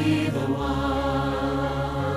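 Choral worship song: a vocal ensemble holding long sustained notes over an orchestral backing, with the bass note changing about half a second in.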